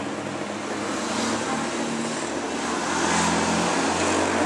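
Steady street traffic noise with a low hum underneath, growing a little louder toward the end.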